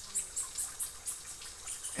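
Water from a thin waterfall trickling and splashing down a rock face, with crickets chirping steadily.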